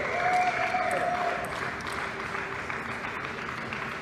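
Audience applauding a won point in a table tennis match: a steady patter of clapping, loudest in the first second.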